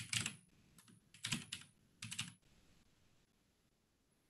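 Typing on a computer keyboard: several quick bursts of keystrokes in the first two and a half seconds.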